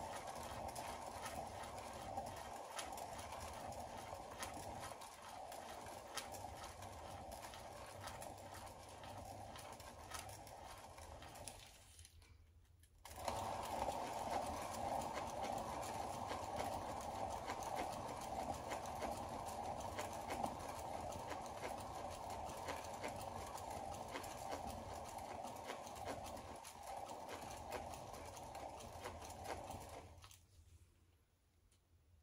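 Paint-pouring spinner turning a canvas, a faint steady whir with a patter of small clicks. The sound drops out for about a second roughly twelve seconds in.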